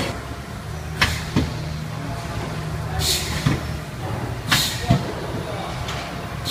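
Powder tray filling and sealing machine's sealing press cycling: sharp metallic clacks about a second in and again past the middle, short hisses of air venting from the pneumatic cylinders, and duller knocks, over a steady low machine hum.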